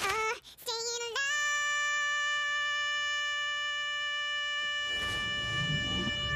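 A chipmunk character's sped-up, high-pitched singing voice: a couple of short rising syllables, then one long held high note about a second in. A low noise joins the note near the end.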